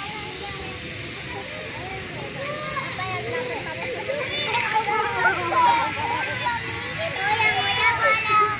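Many children talking and calling out at once, an indistinct babble of young voices with no single clear speaker.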